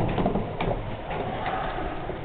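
Steady noise inside a Schindler-modernized elevator car, with two light clicks about half a second and a second and a half in.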